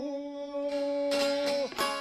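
A man's voice holds one long steady sung note that stops shortly before the end. About two-thirds of a second in, a çifteli (Albanian two-stringed long-necked lute) starts strumming under it.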